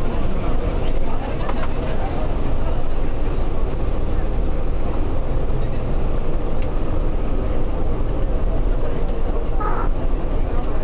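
Steady engine and road rumble heard inside a moving vehicle's cabin, low and continuous, with faint voices in the background.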